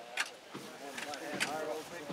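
Bystanders talking at a moderate level, with two short sharp clicks: one just after the start, one about a second and a half in.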